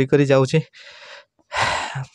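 A man speaks briefly, then after a short pause takes one sharp, loud breath close to the microphone, a gasp, about a second and a half in.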